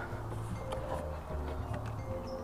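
Quiet background music with a few steady held tones over a low bed, and a few faint clicks.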